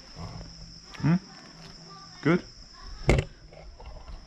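Crickets trilling steadily and high-pitched, with two brief rising vocal sounds and one sharp click standing out above them.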